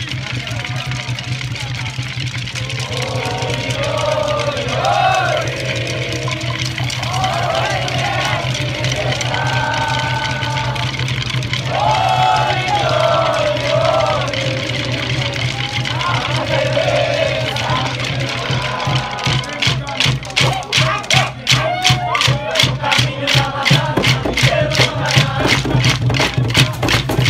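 A maculelê performance: a group sings a call-and-response chant over a steady low accompaniment. From about 19 seconds in, wooden maculelê sticks are struck together in a quick, even beat that carries through to the end.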